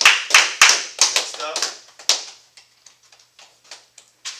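A small group of people clapping, a short round of applause that thins out to a few scattered claps about two seconds in.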